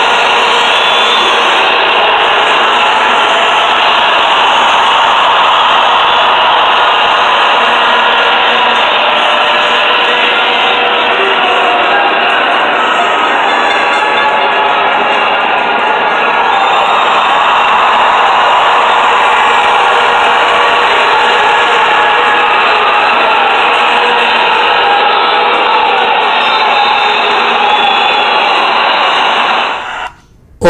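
A huge crowd of demonstrators shouting and cheering all at once, a dense, steady din that sounds muffled and thin.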